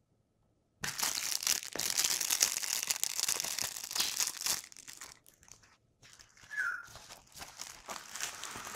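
Thin clear plastic packaging crinkling as it is handled and opened, starting about a second in and loud for some three seconds, then softer rustling. A single short squeak comes near the end.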